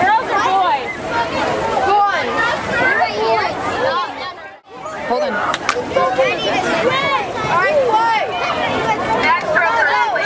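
Many voices talking and calling out over each other, the crowd babble around a pool deck at a swim meet. It breaks off briefly a little before halfway and picks up again.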